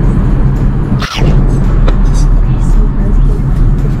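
Steady low drone of an Airbus A380's cabin in flight, with a brief break about a second in where the recording cuts.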